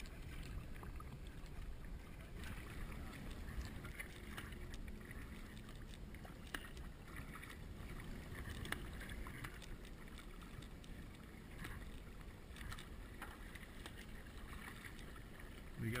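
Sea kayak paddling on calm water: paddle blades dipping in and pulling through, with soft, irregular splashes and drips every second or two over a steady low background.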